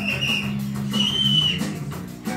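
Punk rock band playing live with electric guitar, bass and drums, heard on an audience recording. A high held tone sounds over the band about a second in.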